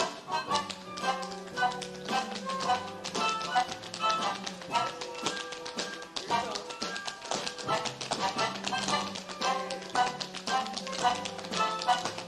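Two dancers' tap shoes striking a stage floor in rapid, dense rhythms over instrumental show music.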